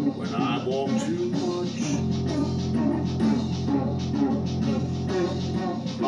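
Live rock song on electric guitar, with a low chord held from about two seconds in to near the end, and a voice singing over it.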